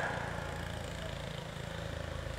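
A pause in a man's sermon over a loudspeaker system: the echo of his last words fades in the first moment, leaving a low steady hum.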